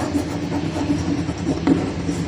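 Chalk writing on a blackboard: a few short taps and scratches as the words are written, over a steady background hum.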